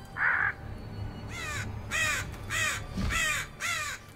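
A crow cawing repeatedly: about six harsh caws, each falling in pitch, starting a little over a second in, as a sound effect on an animated show's soundtrack, with a low steady hum underneath.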